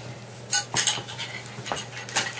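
Gear being handled and moved around: a sharp click about half a second in, then a few lighter clicks and rustles.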